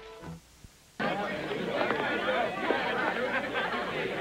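Crowd chatter: many people talking over one another, cutting in suddenly about a second in, after a music cue fades and a moment of near silence.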